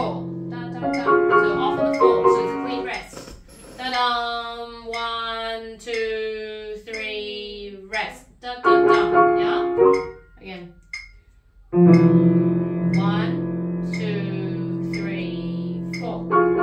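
Yamaha grand piano played in short phrases of notes and chords, with a voice singing the line on 'da' syllables for a few seconds in the middle. After a brief gap near three-quarters of the way through, a loud chord is struck and held to the end.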